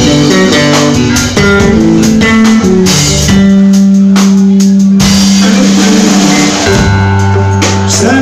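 Live band playing an instrumental passage between vocal lines: guitar and drum kit, loud, with long held notes through the middle.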